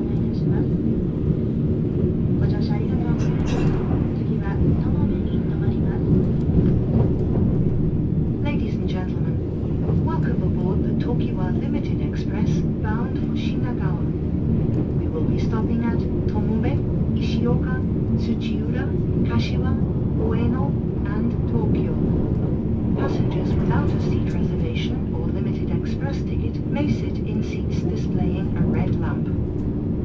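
Steady low rumble of a moving JR East E657-series limited express train, heard from inside the passenger car, with people talking over it throughout.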